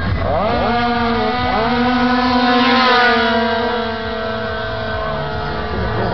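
Tuned two-stroke racing scooters launching off the start line at full throttle, their engine pitch climbing steeply in two quick steps as they shift up. They then hold a high, nearly steady note that drops off slightly as they pull away down the strip.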